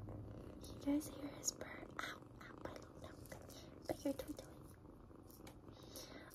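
One-month-old kitten purring steadily, close to the microphone, with a few faint soft clicks and rustles.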